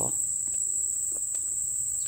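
Insects trilling in one steady, high-pitched, unbroken drone, with a few faint clicks.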